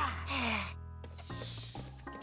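A cartoon character's breathy gasp that falls into a sigh, over sustained background music. About a second and a half in, a sweeping whoosh and a new rhythmic music cue begin.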